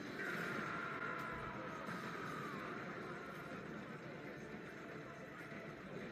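Faint anime episode soundtrack playing in the room: a soft high tone that sinks slightly over the first couple of seconds, over a low hiss.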